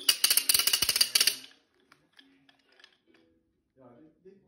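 Wooden ratchet noisemaker spun hard: a loud, rapid clatter of clicks for about a second and a half, then a few faint ticks.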